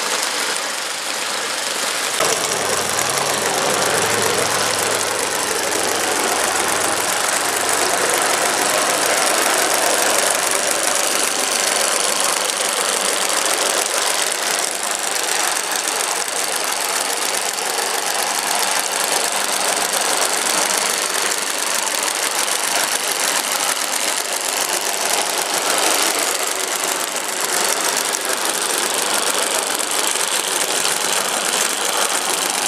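Tiny gasoline model engine, 3/8-inch bore and 1/2-inch stroke, running fast and steady as it drives a garden-railway locomotive.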